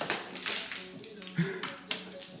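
Water poured from a plastic bottle into a plastic funnel, a steady splashing pour, with a sharp knock near the end.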